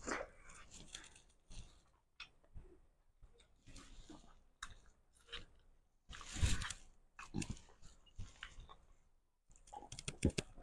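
Close-up chewing and mouth sounds of a person eating food by hand, in soft irregular smacks and crunches, with one louder noise about six and a half seconds in.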